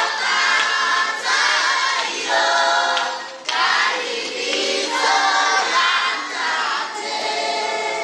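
A large group of children singing together as a choir, in sung phrases with a short break about three and a half seconds in.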